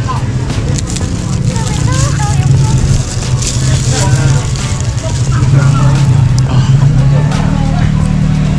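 Busy street noise: a steady low engine hum, like a vehicle idling close by, with people talking in the background.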